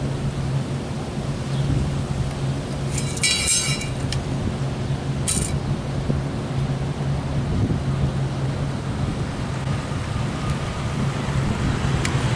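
Steady low machine hum over an even background rush, with a brief high rattle about three seconds in and a short hiss a couple of seconds later.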